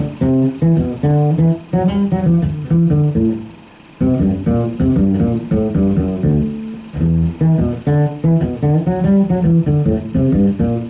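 Electric bass guitar played solo, a plucked melodic line in the middle register. A first phrase dies away about three and a half seconds in, leaving a short gap before a second, longer phrase.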